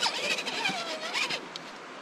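Electric motor and drivetrain of a Red Cat Racing Everest Gen7 RC rock crawler whining as it crawls over rock, the pitch dipping and then rising again with the throttle, with scattered clicks.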